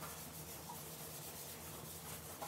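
Quiet room tone: a faint, steady low hum with a light hiss.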